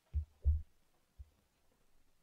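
Three dull, low thumps: two close together in the first half second, the second the loudest, and a fainter one about a second in.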